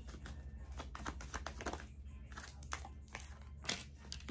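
A deck of tarot cards being handled and shuffled in the hands, giving a quick, irregular run of faint card clicks and rustles, then a card set down on the table near the end.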